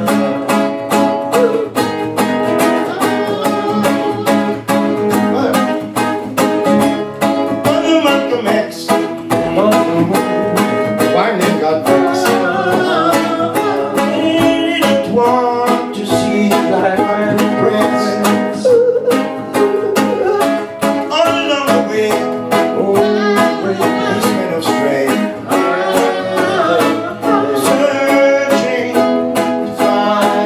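Two acoustic guitars strumming a steady acoustic reggae rhythm, with a voice singing over them at times.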